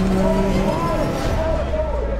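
Several rallycross cars' engines running at speed as they race toward the finish line, the engine pitch wavering up and down over a low rumble.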